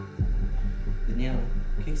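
Suspense background music with a low pulsing beat, then a sudden deep boom a moment in that settles into a low rumble, a dramatic sting for a reveal. A voice is heard briefly in the second half.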